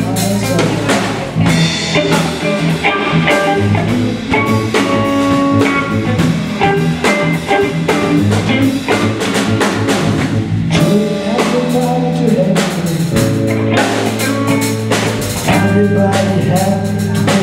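Live blues band playing an instrumental passage: electric guitar, electric bass and drum kit, with steady drum hits under held guitar and bass notes.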